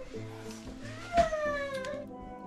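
Background music of steady held notes, with one short whining cry from a small child about a second in, falling in pitch.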